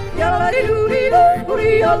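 Yodeling song: a singing voice starts just after the beginning and yodels with quick leaps up and down in pitch, over a music backing with a low pulse.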